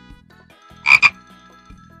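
A frog croaking: one short call of two quick pulses about a second in.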